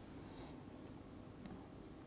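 Faint scratching of a stylus writing on a tablet PC screen over quiet room tone, with a light tap about one and a half seconds in.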